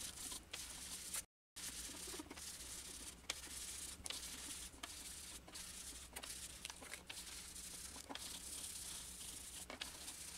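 A small piece of foam sponge being rubbed and dabbed on cardstock and an ink pad to blend green ink. It makes faint soft scuffs about once or twice a second.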